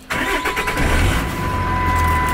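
2008 Dodge Ram's Cummins diesel engine being started with the key. It cranks briefly, catches within about a second, then settles into a steady low idle.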